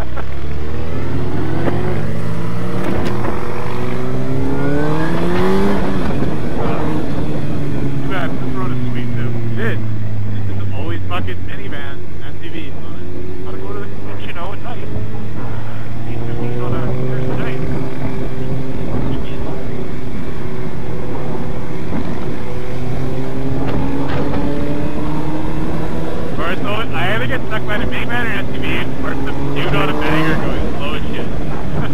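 2005 Suzuki GSX-R1000's inline-four engine through a full Yoshimura exhaust, the revs climbing hard for the first five seconds or so, then dropping back and holding at a steady cruise with gentle rises and falls.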